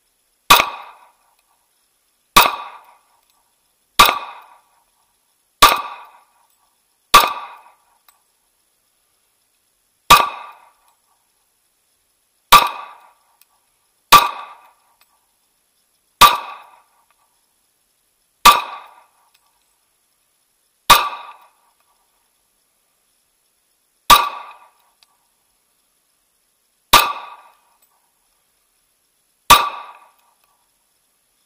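Smith & Wesson M&P .40 pistol fired fourteen times, single shots spaced about one and a half to three seconds apart, each a sharp crack with a short fading tail.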